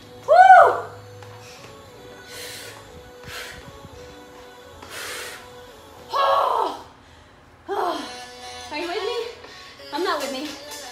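A woman's loud high "woo" shout about half a second in, then breathy exhalations and short voiced grunts of exertion, over steady background music.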